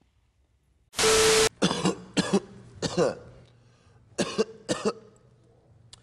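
A man coughing harshly in a run of about seven short coughs, set off by drawing smoke from a lit marijuana pipe. Just before the coughs, about a second in, there is a short loud burst of static-like hiss with a steady hum.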